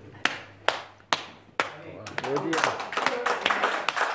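Small audience applauding in a room: a few single claps, then clapping from several people from about halfway in, with a man's voice calling out during it.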